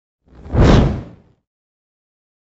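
A single whoosh sound effect for an animated news logo: a rush of noise that swells about half a second in and fades out within a second.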